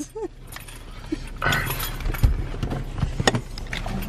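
Handling noise: rustling of a jacket and the packed food bowl beneath it being shifted, with a few sharp clicks and knocks. A short laugh opens it.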